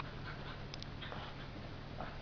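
Quiet room with a faint steady hum, and a few soft clicks and rustles a little under a second in as a dog shifts and climbs off a man's lap onto an upholstered armchair.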